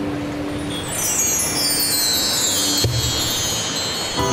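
Live band music in an instrumental passage: a run of bar chimes (mark tree) shimmers downward in pitch over a held note, and a low bass note comes in near the end.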